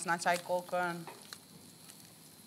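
A person speaks for about the first second, then a faint, steady sizzling hiss of food frying in a pan, with a soft tap or two from a knife on a cutting board.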